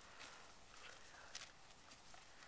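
Near silence with a few faint, short crackles and ticks: a horse grazing, tearing and chewing grass, and stepping through it.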